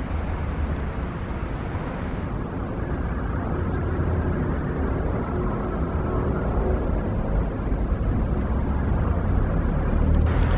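City street traffic noise with a steady low rumble. The higher hiss drops away about two seconds in.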